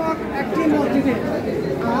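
Speech: a man talking with other voices chattering around him in a crowd.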